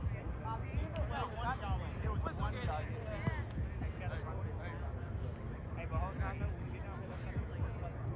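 Indistinct voices of people talking and calling out, with no clear words, over a steady low rumble.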